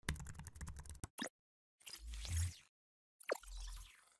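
Sound effects for an animated logo: a quick run of keyboard-like typing clicks for about a second, a short pop, then two whooshes, each with a low thud, the second opening with a falling tone.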